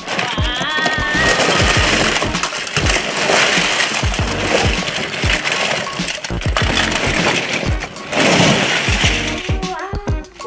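A big plastic tub of battery-operated plastic toy trains being poured out onto carpet: a long, dense clatter of hard plastic pieces tumbling and knocking against each other. Background music with a steady beat runs underneath.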